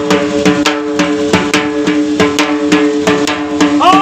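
Devotional folk music: a hand drum beaten in a fast, even rhythm, about four to five strokes a second, over a steady held drone. A singing voice comes in near the end.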